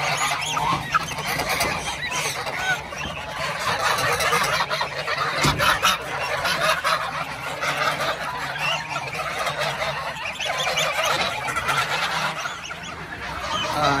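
A flock of domestic geese honking and calling all at once, many overlapping voices without a break, with a dull thump about five and a half seconds in.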